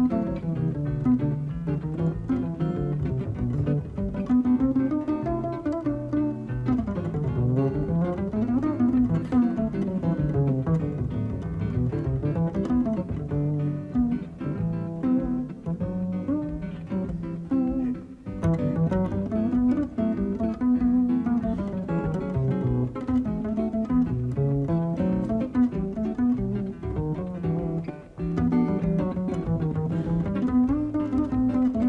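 Upright double bass played pizzicato in a jazz solo: quick plucked melodic runs that climb and fall, with two brief pauses, about eighteen seconds in and near the end.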